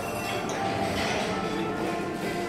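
Dining-room clatter: dishes, cups and cutlery clinking over background chatter.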